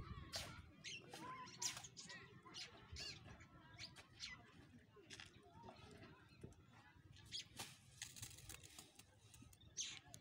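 Faint ambience of short chirping calls, with scattered light clicks and scrapes.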